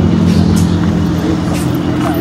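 Mercedes-AMG SLC 43's 3.0-litre twin-turbo V6 idling steadily.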